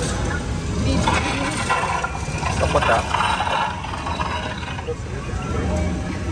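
Ride car of a track-guided jeep ride running with a steady low rumble, with indistinct voices over it for a couple of seconds in the middle.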